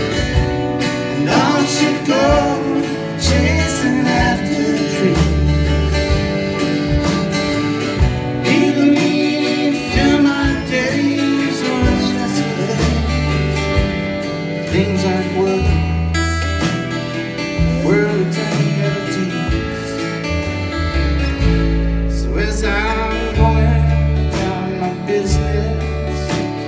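A live country-folk band playing a song on acoustic guitars, bass and piano, with a steady pulsing bass line.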